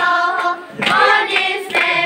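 A large group of girls and young women singing together, holding notes with a short break between phrases just under a second in, with hands clapping along.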